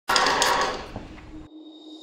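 Curtain-opening transition sound effect: a loud rush of noise at the start that fades away over about a second and a half, leaving a faint steady tone.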